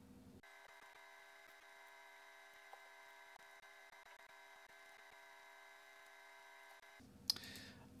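Near silence: only a faint steady hum made of several thin tones, with a brief click shortly before the end.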